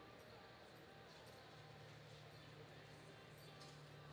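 Near silence: the room tone of an indoor arena, with a steady low hum that fades for about a second near the start.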